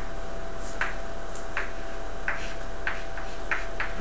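Chalk tapping and scratching on a blackboard while an equation is written: about seven short, sharp clicks at irregular intervals.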